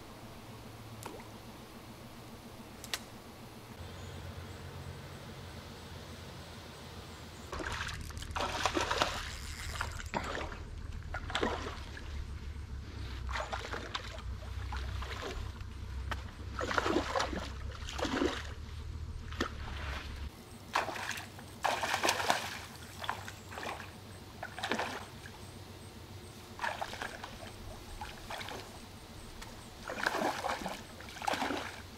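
Hooked rainbow trout thrashing at the pond surface: a run of irregular water splashes every second or two, starting about seven seconds in.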